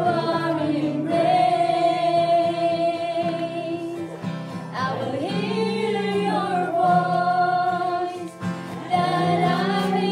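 Slow worship song sung by a woman with other voices joining, in long held notes that move to a new pitch every couple of seconds.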